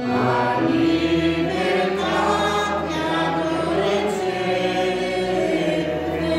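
A congregation singing a religious hymn together, many voices on one melody. The singing grows louder right at the start as a new line begins, then carries on steadily.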